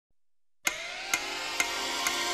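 A moment of silence, then game-show opening theme music starts suddenly: electronic music with a sharp beat a little over twice a second over a held, rising tone.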